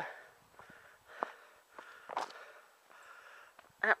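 A runner breathing hard in quick repeated breaths, with a few footfalls on the trail.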